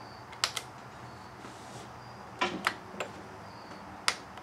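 Push buttons on a Furrion DV3100 RV stereo's faceplate being pressed by a finger: sharp clicks, a quick pair about half a second in and three more around two and a half to three seconds in.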